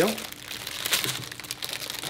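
Clear plastic wrapping crinkling softly and irregularly as a bundle of candy-cane decorative picks is lifted and handled.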